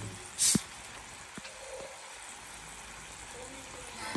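Chicken wings and sliced onions sizzling steadily in a frying pan, with a short loud hiss about half a second in and a couple of light knocks.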